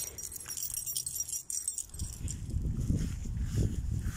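Light metallic jingling of small metal pieces for the first couple of seconds, then a low rumble on the phone's microphone as it is moved.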